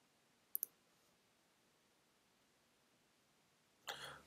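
Two quick computer mouse clicks close together about half a second in, then near silence.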